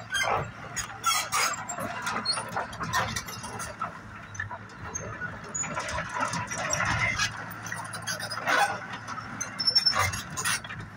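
Hyundai Robex 145LCR-9A crawler excavator running, with its engine humming under repeated metallic squeals and clanks as the machine and its boom and bucket move.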